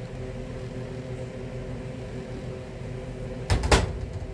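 Kitchen range-hood fan humming steadily, then a glass pot lid with a metal rim clattering twice as it is lifted off the pot and set down on the gas stove's grate, about three and a half seconds in.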